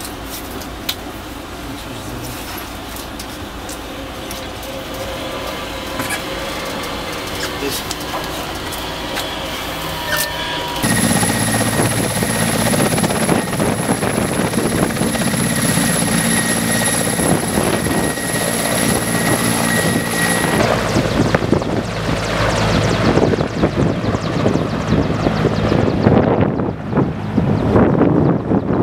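Helicopter running on the ground: a steady high turbine whine over a low, even rotor beat, starting suddenly about a third of the way in. The whine stops about two-thirds through, and a rough rushing noise grows louder toward the end. Before the helicopter comes in, quieter interior sound with scattered clicks.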